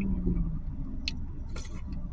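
A woman's closed-mouth "mm" hum of enjoyment, held on one pitch, ends about half a second in. It is followed by soft eating sounds from a spoonful of soup, with a couple of faint clicks, over a steady low rumble inside a car.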